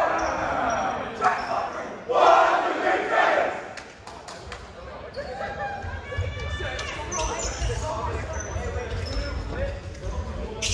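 A team of boys shouting together in a huddle, with a short loud burst at the start and a longer group shout about two seconds in, echoing in a gym. After that come scattered quieter voices as the players spread out.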